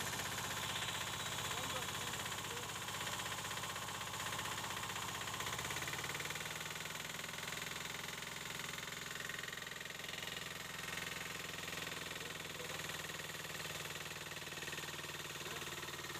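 Small engine of a portable water pump set running steadily, its note shifting up a little about six seconds in, with water gushing from the pump's outlet onto concrete. The pump is primed and delivering a full stream.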